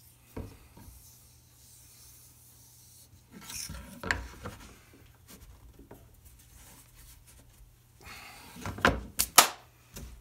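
A glued-up ring of wooden bowl segments being handled on a laminate worktop: wood scraping and rubbing on the board in two stretches, the second ending in a few sharp wooden knocks about nine seconds in.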